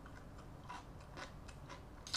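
Quiet, close-up eating sounds: a person chewing rice noodles and blanched vegetables, with a few short, crisp clicks, the clearest a little under and just over a second in.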